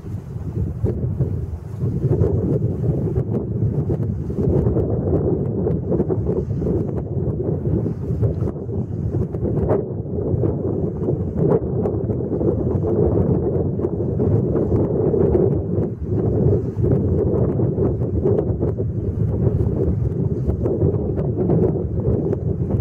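Wind buffeting the microphone: a steady, gusty rumble that rises and falls in strength.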